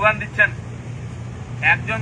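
A man's voice speaking through a handheld microphone and small loudspeaker, breaking off for about a second in the middle, over a steady low background hum.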